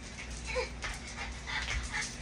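A small dog whimpering in a few short, faint calls, with soft scuffs of feet on the floor.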